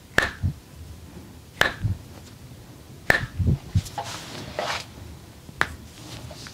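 Four sharp snapping clicks about one and a half seconds apart, each followed by a softer thud, from hands working a woman's hand and wrist during an arm massage, with soft rustling of skin and clothing between them.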